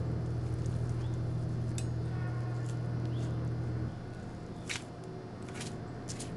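A motor hums steadily at a low pitch, then shuts off suddenly about four seconds in; a couple of faint clicks follow.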